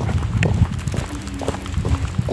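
Footsteps on an asphalt road: a few irregular, sharp heel strikes over a low rumble.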